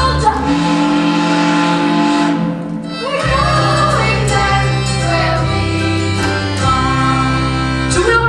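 A group of voices singing a stage-musical number in unison over an instrumental backing track, with long held notes.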